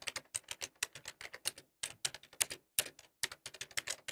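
Recorded sound effect of someone typing on a keyboard: rapid, irregular keystroke clicks with a few short pauses.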